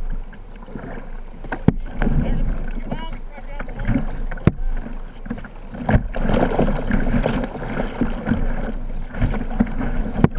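Whitewater kayak run: river water rushing and splashing around the boat as paddle strokes dig in, with a few sharp knocks about two, four and a half and six seconds in.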